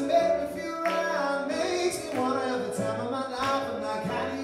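A pop song played live on a stage keyboard, with a sung melody over sustained low bass notes.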